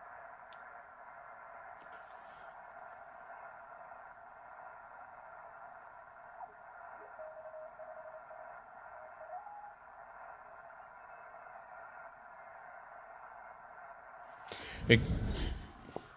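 Shortwave transceiver's speaker giving the steady hiss of band noise through its upper-sideband filter on the 30-metre band. Midway, as the tuning knob is turned, a faint single tone comes in and steps up in pitch.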